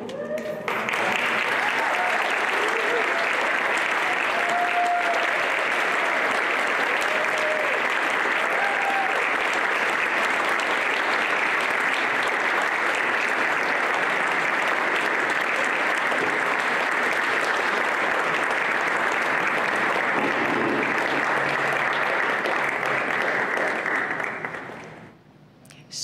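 An audience applauding loudly and steadily. The applause breaks out about a second in and dies away near the end, with a few voices calling out during the first several seconds.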